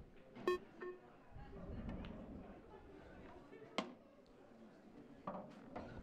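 A pool shot: the cue tip strikes the cue ball with a sharp click, and a moment later the cue ball clicks into an object ball. About three seconds after that comes one more sharp click of balls or a cushion.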